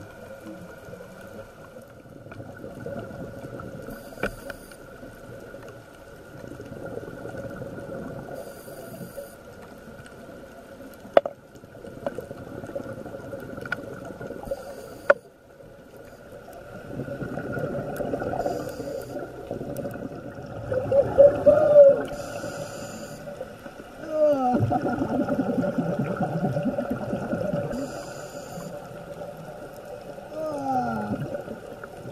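Scuba regulator underwater: a short hiss with each inhaled breath every four to five seconds, and gurgling rushes of exhaled bubbles, loudest in the second half. Two sharp clicks come in the middle.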